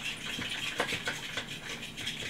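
Wet batter ingredients (eggs, olive oil, water and vanilla) being whisked by hand in a mixing bowl: liquid sloshing with quick, irregular clicks of the utensil against the bowl.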